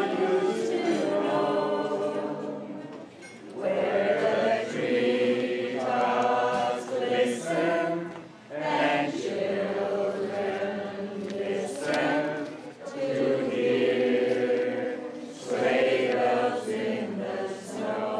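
A group of voices singing together without accompaniment, in phrases a few seconds long with brief breaks between them.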